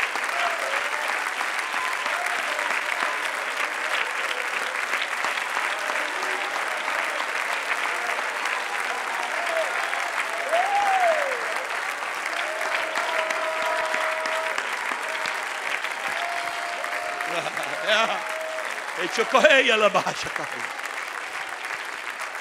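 A large congregation applauding steadily and long, a standing ovation of praise.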